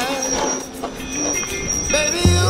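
Background music at a break, with noisy swooshing sweeps in place of the melody.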